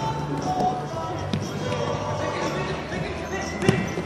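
A futsal ball thudding off players' feet and the hardwood gym floor during play: two sharp knocks, the louder one near the end, over background voices.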